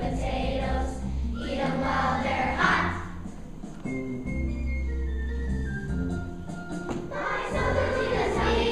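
A large children's choir singing, with a slight dip in loudness a few seconds in.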